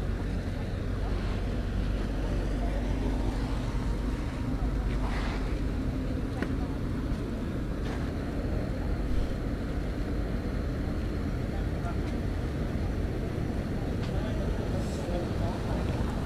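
Street ambience: a steady low rumble of traffic and wind on the microphone, with faint voices in the background.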